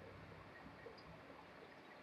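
Near silence: faint, steady room tone.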